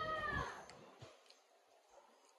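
A cat meowing once, a single call that rises and falls in pitch and fades out within the first half second, followed by near silence.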